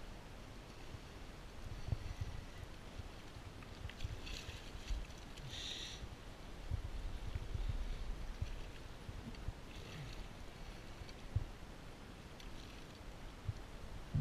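Water moving around a fishing kayak, with a steady low rumble and a few light knocks. Short splashy hisses come about four and six seconds in and again near ten seconds.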